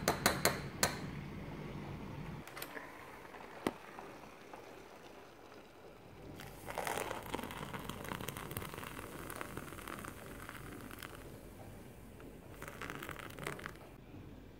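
A metal spoon clinks against the rim of an instant coffee tin a few times, then water is poured from a kettle into a ceramic mug for about four seconds. Near the end a spoon clinks and scrapes in the mug as the coffee is stirred.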